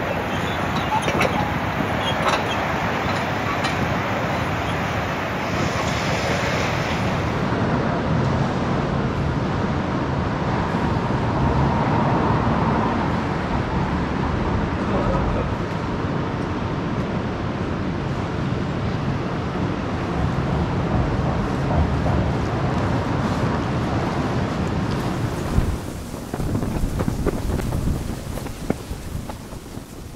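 Outdoor street ambience: a steady rush of wind on the microphone with traffic noise. The sound changes character a quarter of the way in and again near the end.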